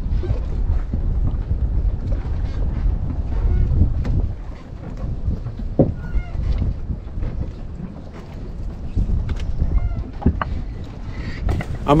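Scattered knocks and rustles of a gill net being hauled in and fish picked from its mesh aboard a small fishing boat, over a low rumble that is heavier in the first few seconds and then eases.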